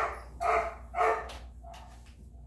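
Rhodesian Ridgeback puppy barking: three short, high yaps about half a second apart.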